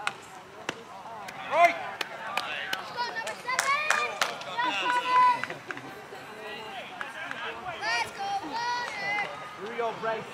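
Children's high voices shouting and calling out over one another, with a few sharp knocks scattered through, the loudest shout about a second and a half in.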